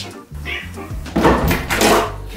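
A domestic cat meowing twice over background music with a steady bass line.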